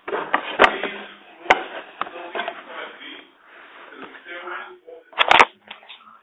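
Indistinct voices, with a few sharp clicks in the first two seconds and a loud thump about five seconds in.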